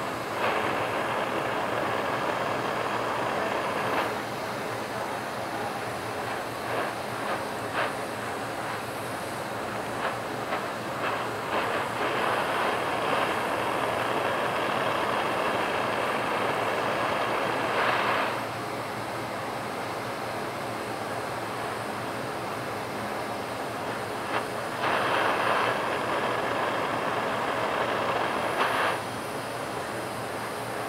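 A GTT glassworking torch burning a small, tight flame, heard as a steady rushing hiss. Three louder stretches of several seconds each start and stop abruptly.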